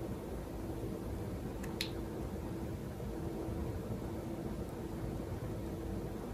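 Quiet room tone with a faint steady hum, and one small click a little under two seconds in.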